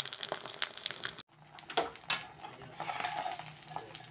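Eggs sizzling and crackling as they fry in hot oil in a wok. After a sudden break the sizzling goes on more softly, with a few metal clinks of a utensil against the pan.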